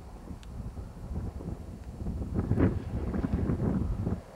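Wind buffeting the camera's microphone, a gusting rumble that grows stronger about halfway through.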